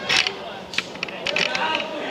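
People's voices calling and chatting at a football pitch, not close to the microphone, with a few sharp clicks or knocks just after the start, in the middle and again past halfway.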